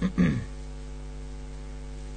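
Steady electrical mains hum in the recording, several low even tones holding level throughout. It is preceded right at the start by a brief, short vocal sound from the narrator, which is the loudest moment.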